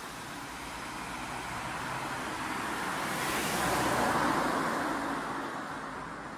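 A car passing on the street: its road noise swells to a peak about four seconds in, then fades away.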